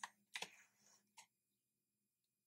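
A few faint keystrokes on a computer keyboard as a web address is typed and entered, ending about a second in.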